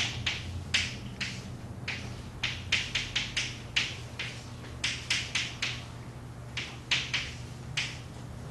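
Chalk tapping and scratching on a blackboard as an equation is written, in quick irregular strokes and taps, over a steady low hum.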